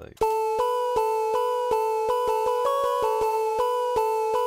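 A fuzzy, piano-like synthesizer melody playing a quick run of repeated notes, with the pitch stepping up briefly in the middle. It is soloed without the bass note normally layered under it, so it sounds more like a loop.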